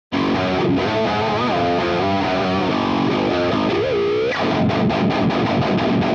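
Distorted seven-string electric guitar, an Ernie Ball Music Man Cutlass tuned down with light-gauge strings, playing a lead line with string bends. About two-thirds of the way in it switches to fast, percussive low chugging on the bottom strings.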